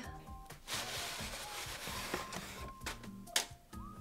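A flat cardboard mailer being pulled open and a paper portrait slid out of it: a rustling, scraping stretch lasting a second or two, then a sharp click near the end. Soft background music plays underneath.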